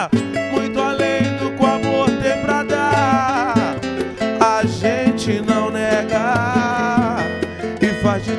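Samba instrumental passage played live: a cavaquinho picking the melody over nylon-string acoustic guitar, with a brisk strummed rhythm.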